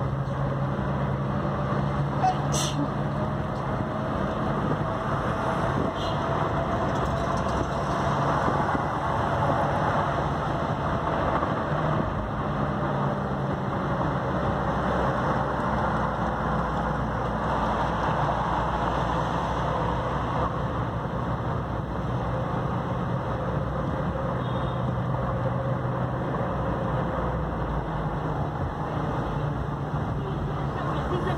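A car driving in city traffic: steady engine hum and tyre and road noise, the engine note shifting a little as speed changes, with a single brief click about two and a half seconds in.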